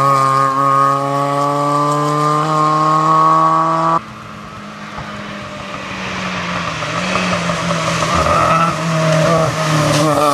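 Fiat 850 rally car's small four-cylinder engine at high revs, its pitch climbing slowly as it pulls away. After a sudden cut about four seconds in it is heard again, fainter, growing louder as the car approaches.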